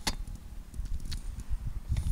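Wind buffeting the camera's microphone in a gusting low rumble, with two sharp clicks, one right at the start and one about a second in, from the camera being handled.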